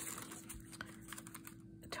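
Faint handling of card stock: fingers pressing and smoothing the paper pages of a handmade journal, with a few light taps and clicks.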